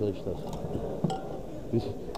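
Indistinct voices of people talking, with a single sharp click about a second in.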